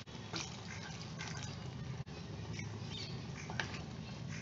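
Water sizzling and bubbling in a hot earthenware pot of vegetable masala just after it was poured in, with a few light knocks of a wooden spatula stirring near the end.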